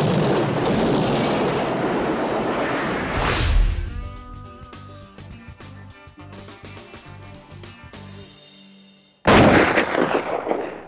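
Movie-trailer sound mix: a dense barrage of gunfire and explosions under dramatic music, ending in a heavy boom about three and a half seconds in. A sustained orchestral chord then rings out and fades, and a sudden loud blast hits near the end.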